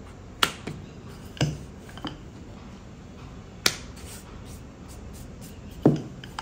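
Five sharp, irregularly spaced wooden clacks from rolling out an oat-flour roti: the wooden rolling pin knocking against the rolling board, the loudest near the end.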